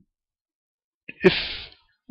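Dead silence for about a second, then one short, breathy burst of a man's voice as he says "if".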